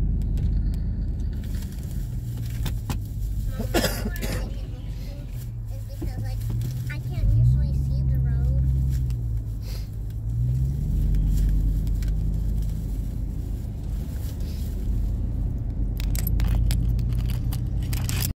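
A 2004 Chevrolet Tahoe's V8 engine and road noise heard from inside the cabin while driving slowly. The engine note rises about seven seconds in and again about ten and a half seconds in as it pulls away. There is a brief rattle about four seconds in.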